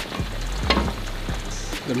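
Food sizzling in hot oil on a gas stove, with a few light clicks of a metal spoon against the pan.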